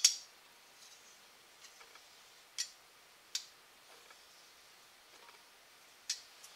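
Light clicks and taps of a small aluminium part and a marker being set against a granite surface plate and gauge block: a sharp click at the start, two more about two and a half and three and a half seconds in, with quiet between.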